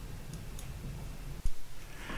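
Low hum and faint background noise on an open studio line, with a few faint ticks and a single sharp click about one and a half seconds in.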